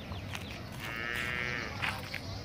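A single drawn-out call from a farm animal, about a second long, starting near the middle, its pitch held fairly steady with a slight rise and fall.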